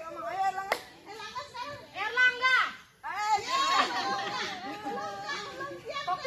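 Children's high voices chattering and calling out, loudest a little past the middle. A single sharp click comes under a second in.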